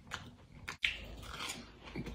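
Close-up crunchy chewing of a crisp, crumb-coated fried ball, with irregular crackles. The sound cuts out for a moment a little under a second in, then comes back with a sharp click.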